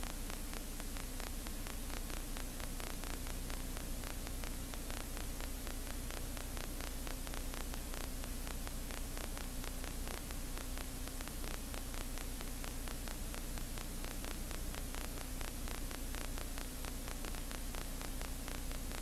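Steady static hiss with a fine, even crackle over a low hum: an open audio channel carrying no voice, level throughout.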